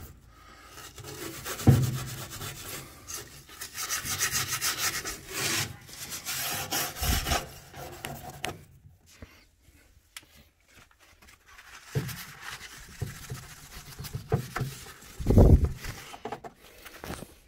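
Steel wool pad scrubbing the edge of a wood stove's glass door in quick back-and-forth strokes, scouring off the soot deposits that a sponge won't remove. It eases off about halfway, picks up again, and there is a loud knock near the end.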